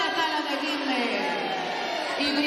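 Speech: one voice speaking expressively through a microphone and PA system in a large hall, with pitch swooping up and down.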